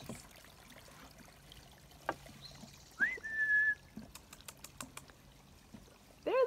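A single short whistled note about three seconds in, rising and then held level for well under a second, over a quiet outdoor background with a few faint clicks.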